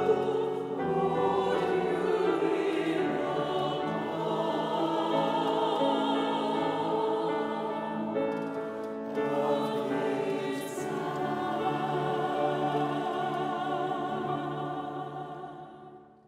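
Mixed church choir singing a slow hymn with piano accompaniment, with a brief break between phrases about halfway through and the last chord fading away near the end.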